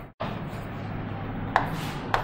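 Pen strokes writing on an interactive whiteboard's screen, with one louder scrape near the end, over a steady low hum.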